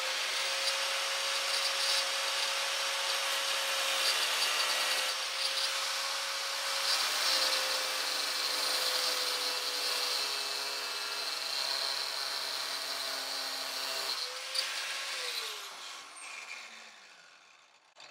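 Angle grinder with a cut-off wheel cutting into a steel bracket: a steady high whine under a harsh grinding hiss, the pitch sagging slightly as it cuts. About fourteen seconds in it is let off, revved briefly once more, then spins down with a falling whine.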